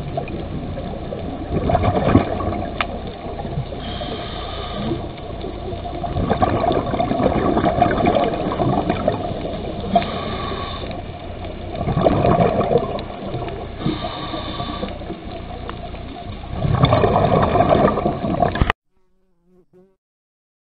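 Muffled underwater water noise, with gurgling swells every few seconds, that cuts off suddenly near the end.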